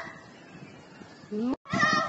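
Children's voices: a short rising cry about a second and a half in, then after a sudden break, high-pitched shouts and squeals of kids at play.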